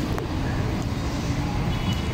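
Steady low rumble of city street traffic, with one faint click shortly after the start.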